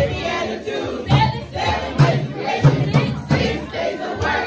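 A group singing a Christmas counting song together over recorded music with a steady beat of about two pulses a second, led by a woman singing into a microphone.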